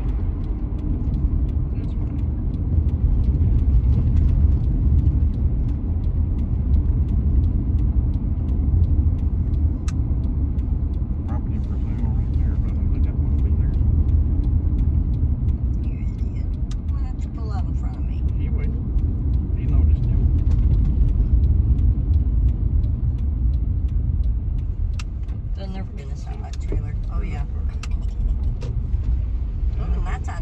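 Steady low rumble of a car's tyres and engine heard from inside the cabin while driving on a country road.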